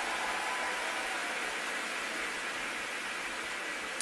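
Arena audience applauding steadily at the end of a skating program.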